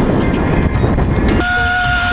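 Wind rush and rumble of a rider speeding down a long zip wire. About one and a half seconds in, the rush thins and a steady held tone begins.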